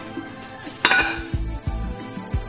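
Metal frying pan knocked down onto the hob, a single loud clang a little under a second in that rings briefly, over background music with a heavy low beat.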